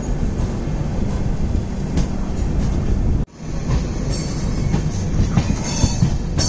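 Passenger train running, heard from on board: a steady low rumble of wheels on the track. The sound drops out for an instant a little after three seconds in.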